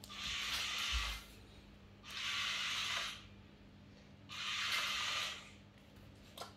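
Small Lego Boost electric motors and plastic gears whirring in three bursts of about a second each, as keys are pressed to drive the Lego forklift robot.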